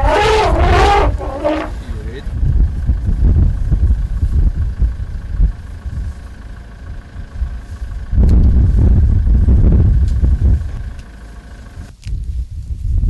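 African elephant trumpeting: a loud, wavering blast that breaks off about two seconds in. After it comes a low rumble that swells again from about eight to ten and a half seconds in.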